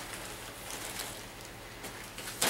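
Faint, steady hiss of rain in the background, with no distinct knocks or clicks.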